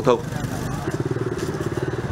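Small motorbike engine running with a fast, even putter that comes in about a second in.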